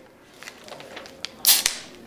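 A beer can cracked open about one and a half seconds in: a short, sharp pop and hiss, after a few faint clicks.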